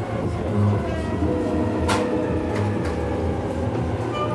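A London Underground Jubilee line tube train moving alongside the platform behind the platform screen doors, a steady rumble with one sharp click about two seconds in.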